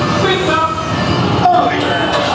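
Theme-park ride vehicle rolling along its track with a steady rumble, mixed with voices over the ride's onboard speakers.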